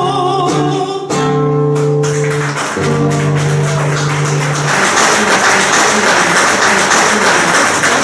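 The close of a live tango song. A female singer holds a last wavering note for about a second, the accompaniment sustains the final chords, and audience applause breaks out about five seconds in.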